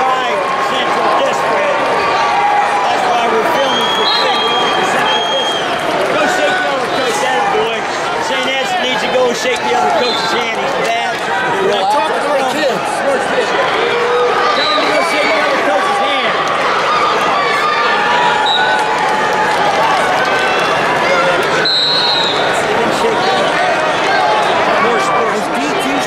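Arena crowd chatter: many voices talking over one another at a steady level, with a few brief high tones now and then.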